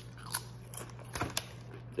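A Doritos Sweet & Tangy BBQ tortilla chip bitten and chewed: a few sharp crunches, one about a third of a second in and a cluster a little after a second in.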